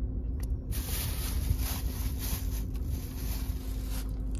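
Low steady rumble and hum of a car's engine idling, heard from inside the cabin. About a second in, a rustling hiss starts and runs for nearly three seconds before cutting off.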